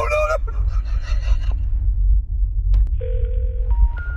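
The tail of a man's shouted "No!" dies away at the start over a steady deep rumble. About three seconds in comes a run of electronic beeps, each a clean tone a step higher in pitch than the last.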